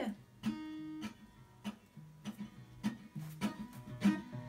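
Acoustic guitar strumming chords in a steady rhythm, roughly one strum every half second or so, played fairly quietly as an intro.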